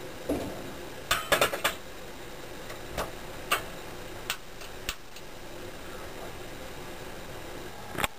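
Sharp metal clanks and clicks of a stovetop waffle iron being handled and set down on a gas stove's burner grate: a quick cluster about a second in, then single clicks every half second or so through the middle, over a steady faint background hiss.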